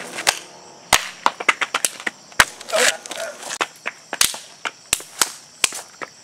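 A series of irregular sharp clicks and knocks, two or three a second, with a short vocal sound a little before the middle.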